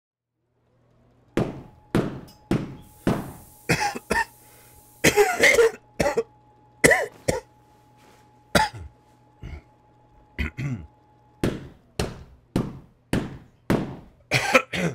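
A carpet beater striking dusty cloth in steady thwacks, about two a second, with a man coughing around the middle, as if from the dust.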